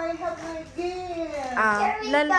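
A young girl singing in a high voice, holding long drawn-out notes that dip lower near the end.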